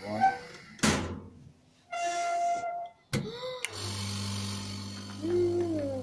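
Vacuum former at work: a sharp thunk as the mould platen is levered up into the heated plastic sheet, a short hiss, then the vacuum pump starting with a steady low hum from about four seconds in.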